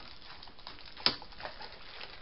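A single sharp tap or click about a second in, with faint rustling from paper and card being handled on a table.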